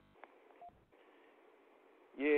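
Near silence: faint telephone-line hiss with a click near the start and one brief beep.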